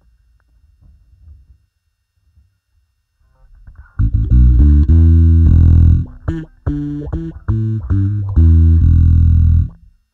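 Electric bass played through an envelope filter (auto-wah) set to sweep downward, a short line of held notes and quick plucks. It starts loud about four seconds in after near quiet and stops shortly before the end.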